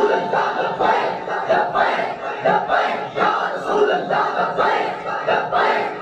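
Large crowd of men shouting religious slogans in unison: loud, rapid, rhythmic shouts about two to three a second.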